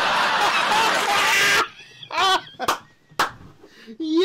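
Studio audience laughing, cut off suddenly about one and a half seconds in. Then a man laughs in three short, breathy bursts.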